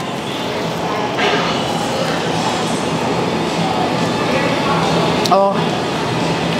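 Steady background noise of an indoor eating hall, a dense even rush of ventilation and indistinct room sound that grows slowly louder.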